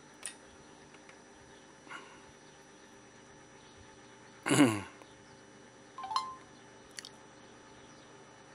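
Steady low hum of running desktop computers, with a small click just after the start as the power button of a Lenovo ThinkCentre mini PC is pressed to restart it. A short voiced sound falling in pitch comes about halfway, the loudest moment. A brief beep follows about six seconds in, then a couple of faint clicks.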